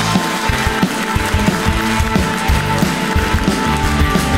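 Live band playing an up-tempo rock instrumental on electric guitar, bass guitar, drums and keyboards, with a driving bass line and drum beat.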